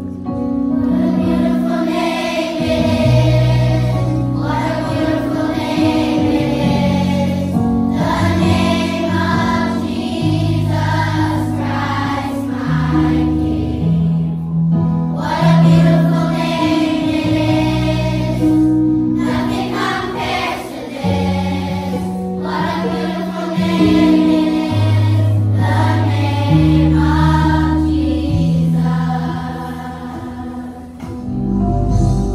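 Children's choir singing a Christmas song to electronic keyboard accompaniment, the keyboard holding low chord notes that change every second or two under the sung phrases.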